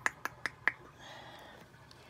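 A quick run of four sharp clicks in the first second, about four a second, followed by a faint hiss.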